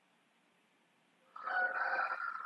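A single drawn-out animal call with a steady pitch, starting about a second and a half in, after near silence.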